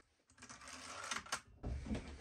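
Faint rubbing and a few light clicks as hands handle the extended nail magazine of a cordless framing nailer resting on a wooden bench.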